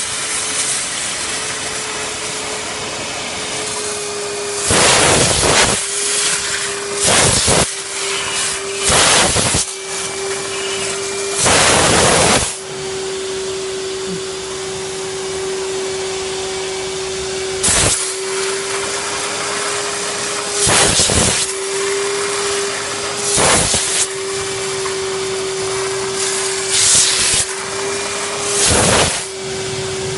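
Vacuum cleaner running steadily with a constant whine, while a steam-vacuum nozzle on a steam cleaner lets out about ten short, loud hisses of steam at uneven intervals.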